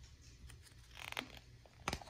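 A page of a picture book being turned by hand: a soft paper rustle about a second in, then a sharp flap near the end as the page swings over.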